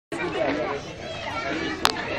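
Several people talking at once in a small crowd, with one sharp click near the end.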